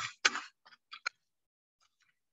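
A few faint, short taps of a stone pestle against a stone mortar (molcajete) crushing avocado residue. Three come close together about a second in, and one more near the end.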